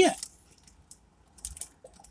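Faint crinkles and rustles of a paper burger wrapper being handled, in two short spells: about half a second in, and again around a second and a half.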